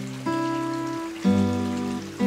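Acoustic guitar chords, struck about once a second and left to ring, with a soprano saxophone melody over them, against the steady rush of a mountain stream.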